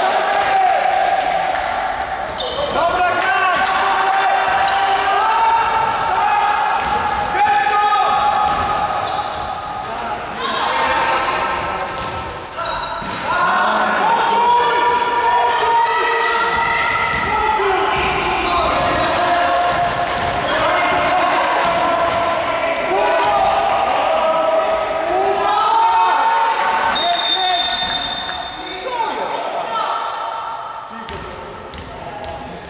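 Basketball game sounds echoing in a sports hall: the ball bouncing on the court floor and players' shoes on the floor, under voices calling and shouting through most of it. A short high whistle near the end, as play stops for a free throw.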